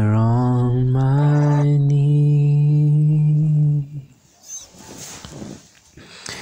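A low voice holds one long sung note for about four seconds, stepping up slightly in pitch about a second in, then falls away to a quiet background.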